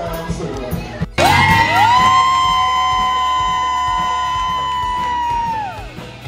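Live band music, then, after a cut about a second in, a loud long held high note that slides up at its start, holds steady for about four seconds and falls away near the end.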